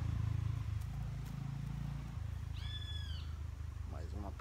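A steady low hum throughout, and about two and a half seconds in a single short, high call from a bird, its pitch rising and falling in an arch.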